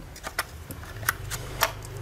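A handful of sharp plastic clicks and knocks as a plastic battery adapter is pushed onto the battery mount of a Makita 18V power tool, over a steady low hum.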